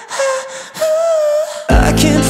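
A man singing a held, wavering vocal line over thin accompaniment with no bass; just before the end the full accompaniment comes back in with a strong low end and guitar.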